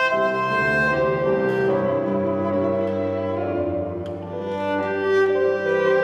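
A cello and a grand piano playing classical chamber music together, the cello bowing long sustained notes over the piano.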